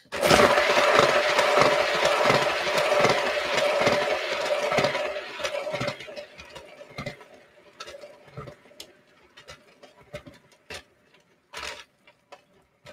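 A paint spinner turning a poured acrylic canvas at speed. It whirs with a steady hum and a low thump a few times a second. The sound starts suddenly, runs for about five seconds, then dies away into faint clicks as the spin slows.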